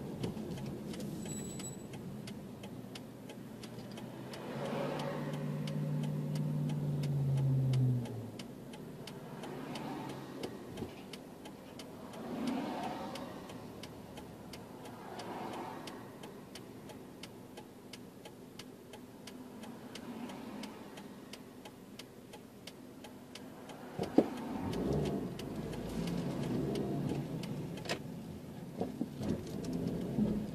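A car driving, heard from inside the cabin: a steady engine and road hum, with the engine note rising for a few seconds early on and then falling away as it eases off. A light steady ticking runs underneath, swells of noise come and go, and there is a sharp click a little past the middle.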